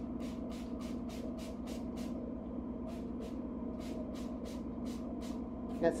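Hand trigger spray bottle squirting in quick repeated pumps, about four a second, each a short hiss, in two runs with a brief pause between, over a steady low hum.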